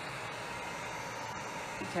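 Handheld heat gun blowing steadily, a constant airy whir, warming a wet resin coat so it flows. A voice starts right at the end.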